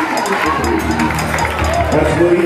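Live gospel band of drums, keyboards and organ playing, with a voice over it. A low held bass note comes in about half a second in.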